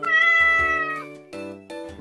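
A single meow lasting about a second, falling slightly in pitch at the end, over soft background music.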